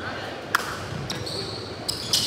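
Basketball jump ball in a gym: the ball is struck once with a sharp smack about half a second in, then sneakers squeak on the hardwood court from about a second in.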